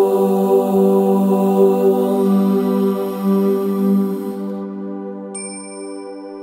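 A long chanted 'Om', held on one steady pitch over a droning backing, fading out about four and a half seconds in. A high chime then rings once near the end.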